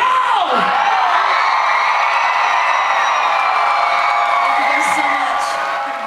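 Concert crowd cheering and whooping over a live band's amplified music, which holds a sustained note or chord at high volume. A voice glides down at the start, and the whole sound eases slightly near the end.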